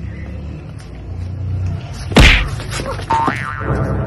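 A loud, sudden cartoon-style boing sound effect about two seconds in, marking a fall, over a low steady hum.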